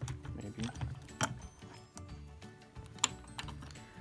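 Background music with a few sharp metallic clicks and knocks, the strongest about a second in and again near three seconds, as the motor and gear housing of a mini mill is lifted off its gearbox.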